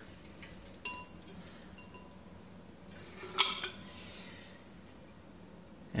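Glass upper beaker of a Bodum Pebo vacuum coffee maker clinking as it is handled, with a few light clicks and short glassy rings about a second in and a louder clatter about three and a half seconds in.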